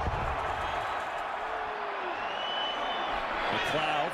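Large stadium crowd cheering steadily as the opening kickoff is in the air.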